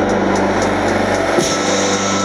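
Live band playing an instrumental passage of a song: dense, sustained keyboard chords over bass, with a drum hit about one and a half seconds in.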